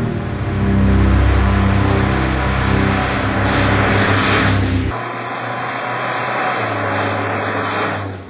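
Car engine running and road noise as a car drives along at speed, over background music with a regular ticking beat. About five seconds in the sound changes abruptly to a quieter, steadier engine hum.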